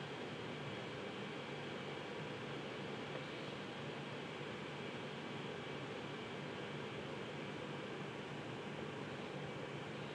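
Steady, even hiss with a faint low hum: background room noise.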